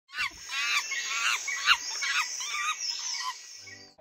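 Birds calling: a run of about six short warbling calls over a steady high hum, with a soft low thump near the start and another under two seconds in, fading out near the end.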